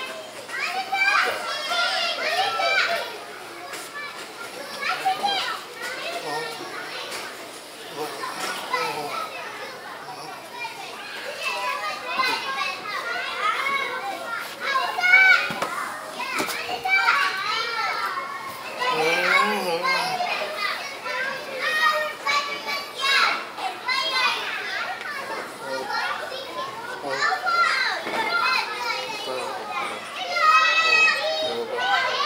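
Children's voices, playing and chattering, mixed with continuous talking.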